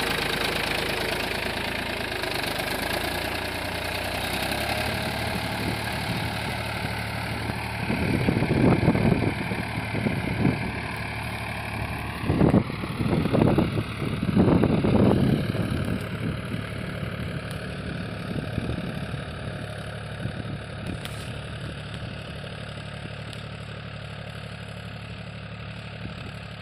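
Tractor diesel engine running steadily as it pulls a tillage implement through the soil, with a few louder surges in the middle, then slowly fading as it moves away.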